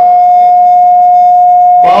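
Public-address microphone feedback: one loud, steady whistle-like tone held at a single pitch. A man's voice comes back in near the end.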